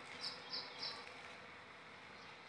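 Three short, high chirps in quick succession, about a third of a second apart, from a small animal, over a faint steady outdoor background.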